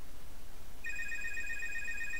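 A telephone ringing: one electronic ring starting about a second in and lasting just over a second, a steady high tone with a rapid pulsing warble beneath it, over a steady low hum.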